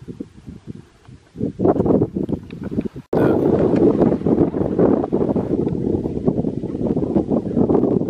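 Wind buffeting the camera microphone: uneven gusts at first, then a brief dropout about three seconds in, after which it is a loud, steady, fluttering low rumble.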